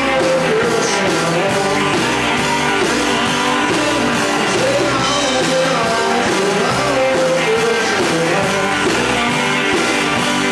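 Live rock band playing loudly: two electric guitars, electric bass and a drum kit, with a lead vocal over the top.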